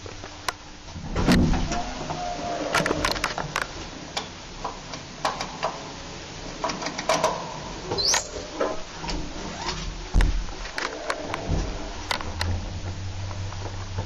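1955 Hävemeier & Sander lift car travelling in its shaft: a steady low hum with irregular clicks, knocks and rattles. There are heavier thumps about a second in and again around 10 and 11 seconds, and a brief rising squeak about 8 seconds in.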